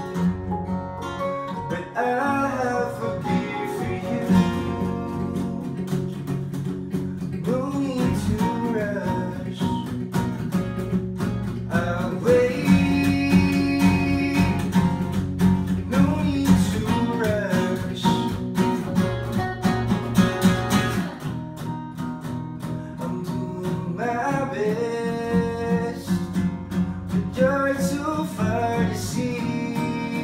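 Band playing live: two strummed acoustic guitars and an electric guitar, with a male voice singing phrases over them.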